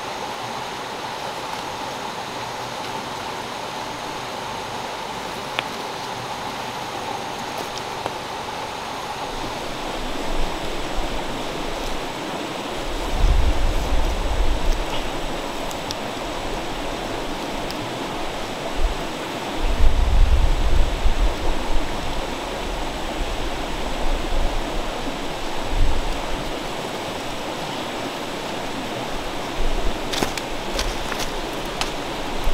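Shallow stream flowing over stones, a steady rush of water. In the second half, several irregular low rumbles come and go over it, the loudest about two-thirds of the way in.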